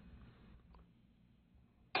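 Low, quiet room sound with a faint hum, then right at the end a sharp click as the portable air compressor is switched on and its motor starts with a sudden loud, steady run.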